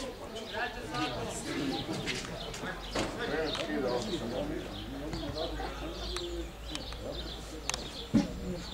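Many children's voices chattering and calling out across an open football pitch, with several sharp thuds of footballs being kicked.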